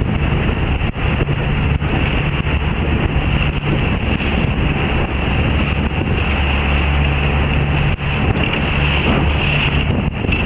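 Wind buffeting the microphone over choppy water, with a motorboat engine's steady low hum underneath.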